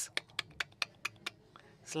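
A quick, irregular series of about nine sharp clicks over a second and a half, made to imitate the clatter of horse hooves on paving stones.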